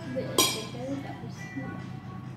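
A single sharp clink of metal cutlery striking crockery about half a second in, ringing briefly, amid the scrape and tap of eating utensils.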